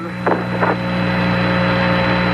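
Open radio channel of the Apollo 11 air-to-ground voice downlink from the lunar surface: static hiss with a steady low hum, heard between words of the transmission.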